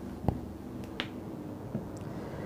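Two short, sharp clicks about three quarters of a second apart, then a fainter one near the end, over quiet room noise.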